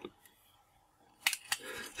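A sticker being peeled off a trading-card backing: near silence, then a few short, sharp paper-and-film crackles a little over a second in, with faint rustling after.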